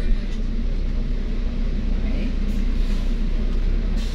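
Engine and road noise of a moving double-decker bus, heard from on board: a steady low rumble.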